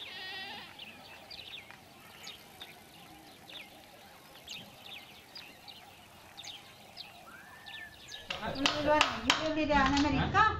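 Faint outdoor ambience with scattered short, high bird chirps over the first eight seconds. Near the end it turns much louder, with voices and a few sharp knocks.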